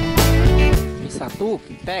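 Background music with guitar that cuts off about a second in, followed by a man's short shouts.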